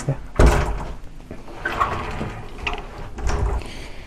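Hinged closet door being handled and swung shut: a sharp knock about half a second in, then softer handling noises.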